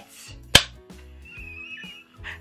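A souvenir film clapperboard snapping shut: one sharp clack of the clapstick striking the board about half a second in.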